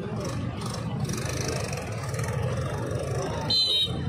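One short, shrill blast of a referee's whistle about three and a half seconds in, signalling the penalty kick, over the steady murmur of a large outdoor crowd.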